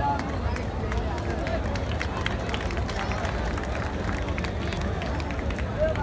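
A large audience chattering inside a circus tent, a dense hubbub of many voices over a steady low rumble, with scattered sharp clicks.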